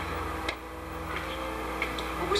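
Footsteps on stone steps: a few sharp, irregular clicks about half a second apart, over a steady low hum.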